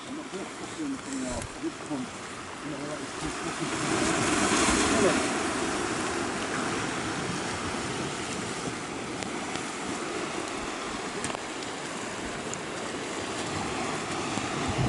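Sea surf washing onto a rocky shore, a steady wash that swells as a wave breaks about four seconds in.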